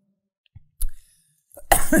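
A woman coughing into her fist: two short coughs, then a louder, longer one near the end.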